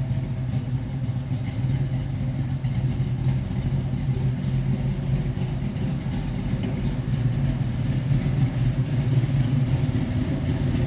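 A 1973 Ford Mustang's 351 Cleveland V8, stroked to 408 cubic inches, running at a steady idle through stainless headers and dual exhaust, a low even rumble.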